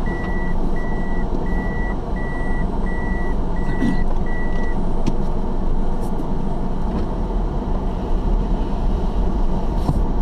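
A car's reverse warning beeper, a high electronic beep repeating about one and a half times a second, heard inside the cabin while the car backs up during a turn; it stops nearly five seconds in. A steady low engine and road rumble runs under it.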